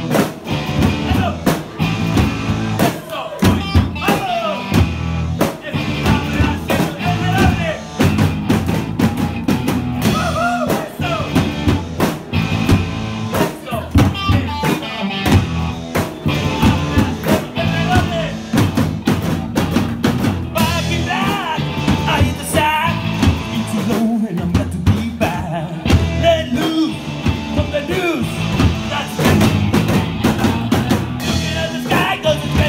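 Live rock band playing a song, with a drum kit keeping a busy beat under electric guitars.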